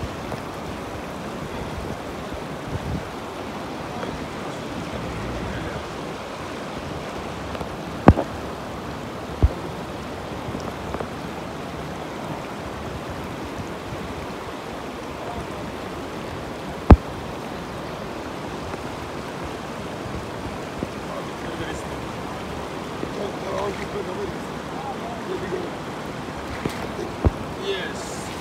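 Shallow river water rushing steadily over rocks around wading legs. Three sharp knocks stand out above it, two close together about a third of the way in and one past the middle.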